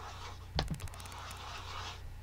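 A faint knock about half a second in, followed by a quick run of light clicks, over a low steady hum.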